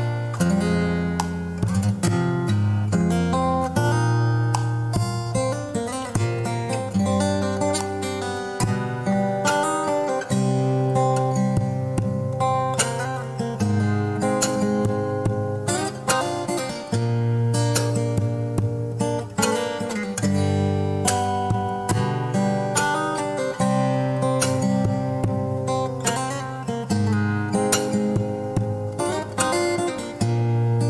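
Solo acoustic guitar played fingerstyle: a plucked melody with frequent sharp note attacks over sustained bass notes, played continuously.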